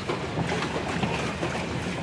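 Wind noise on the microphone with water moving around a pedal boat on a pond, a steady even rush with no distinct events.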